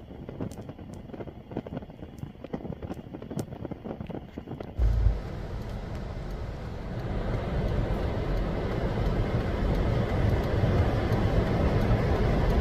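A gas fire pit burning over fire glass, with light irregular ticks and crackles. About five seconds in it gives way to a steady low rumble of car and road traffic heard from inside a car, growing louder towards the end.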